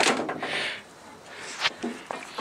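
Handling noise from hands working in a car's engine bay: a sharp knock, then a short rustling scrape, and a second knock about a second and a half later.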